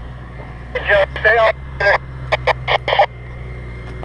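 Off-road vehicle engine idling, a steady low hum, with a voice talking over it for a couple of seconds.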